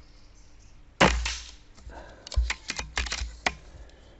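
A single air-rifle shot about a second in, a sharp crack with a short echoing tail, followed by a quick run of sharp mechanical clicks and knocks over the next second and a half.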